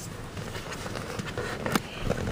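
Steady low rumble inside a car cabin, with a few faint clicks and rustles of movement.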